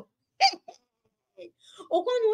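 A woman's short, sharp burst of laughter about half a second in, followed by a few faint breathy catches and a brief pause, then her voice starting up again near the end.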